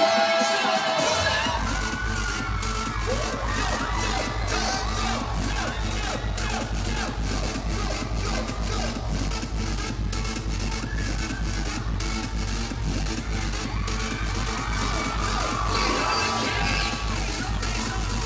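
Live concert sound system playing an electronic dance track; a heavy bass beat comes in about a second in, with a crowd of fans screaming over it.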